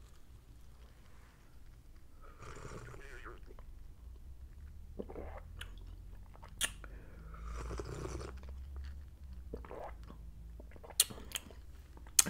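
Close-up mouth sounds of sipping tea from a lidded plastic cup and swallowing, with two soft drawn-out sips about two and seven seconds in and a few sharp mouth clicks between and near the end.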